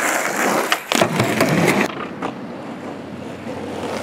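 Skateboard wheels rolling over rough pavement, with a few sharp clacks of the board about a second in. After an abrupt change at about two seconds, quieter rolling noise follows and slowly grows louder.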